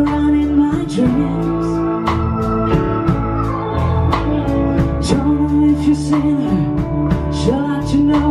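Live blues-rock band playing an instrumental passage: an organ sound from the keyboard holds a long chord over drums and cymbals, while electric guitar notes bend up and down in pitch.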